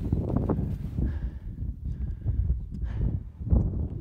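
Wind buffeting a phone's microphone as an uneven low rumble, with scattered short knocks and crunches through it.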